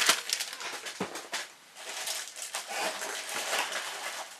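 Clear plastic bags crinkling and hard plastic kit parts knocking as they are handled, with two sharp clicks, one at the start and one about a second in.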